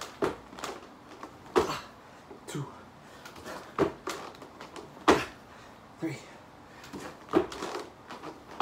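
A man grunting and breathing hard with effort through burpee reps, about once a second, with soft thuds of his hands and feet landing on foam floor mats.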